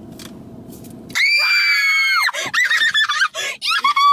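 A young woman screaming in excitement. A loud, high-pitched shriek held for about a second starts about a second in. It breaks into short squeals and giggles, and a last brief squeal comes at the end.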